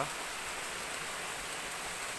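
Steady rushing of cascading water, an even hiss with no breaks.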